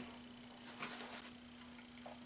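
Faint soft swishes of a boar-bristle shaving brush working thick lather onto the face, over a steady low hum.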